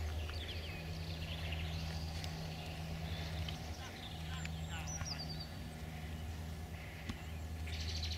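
Small birds chirping and calling over a steady low hum, with a short falling whistle about five seconds in.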